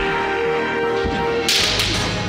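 Bamboo kendo swords (shinai) swishing and clashing in one short burst about one and a half seconds in, over background music with held tones.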